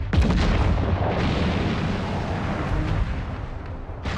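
Heavy naval gunfire and shell explosions in a continuous rumble, beginning with a sudden loud blast.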